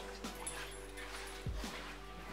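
A dog whimpering faintly with excitement, over quiet background music, with a soft thump about one and a half seconds in.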